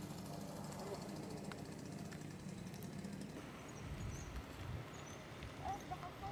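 Quiet outdoor ambience with faint, indistinct voices, and a low rumble about four seconds in.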